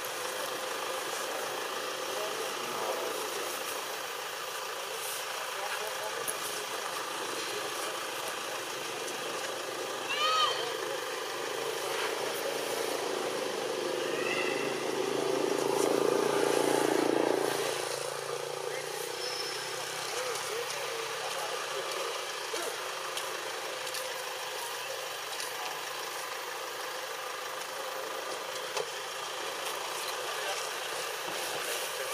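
Steady outdoor background noise, with a louder swell of noise from about 14 to 17 seconds and two short, high, chirping calls near 10 and 14 seconds.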